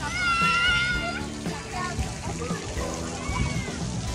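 A child's high-pitched squeal, held for about a second at the start, among other voices, with background music underneath.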